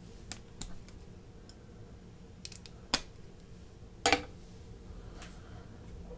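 Small steel tool parts handled and set down: half a dozen separate sharp metal clicks and taps, the loudest about three and four seconds in, the second with a short ring.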